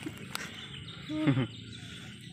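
A man's short wordless exclamation about a second in, over faint, steady insect chirring in the background.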